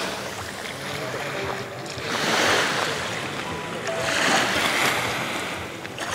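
Small waves washing onto a sandy beach: a hiss of surf that swells and fades twice, a couple of seconds apart.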